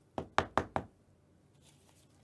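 Four quick knocks on a hard surface, about a fifth of a second apart, within the first second.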